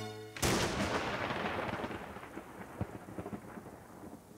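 Recorded thunderclap sound effect over the stage speakers. It strikes suddenly, just after the music breaks off about half a second in, then rumbles and fades over the next few seconds.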